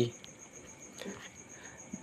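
Faint, steady, high-pitched pulsing trill of an insect in the background during a pause in speech.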